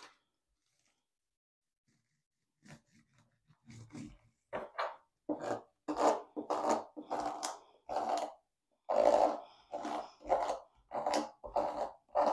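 Plastic scraper rubbed back and forth over hot-fix transfer tape laid on a rhinestone template, pressing the stones so they stick to the tape. It is a run of short scraping strokes, two or three a second, starting about three seconds in.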